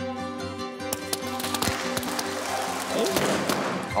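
Background music with steady held notes, joined about a second in by a crowd clapping and cheering that grows louder toward the end.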